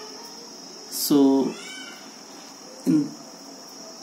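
Only speech: a man's voice saying a long, drawn-out "So…" about a second in and a short "in" near the end. Under it there is a steady, faint high-pitched whine and room hiss.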